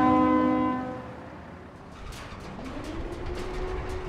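A low horn blast of two tones together, lasting about a second. It is followed by a faint tone that rises in pitch and then holds steady, with scattered sharp ticks.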